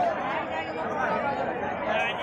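Crowd of men talking and calling out over one another in an outdoor crowd: a steady babble of overlapping voices with no single clear speaker.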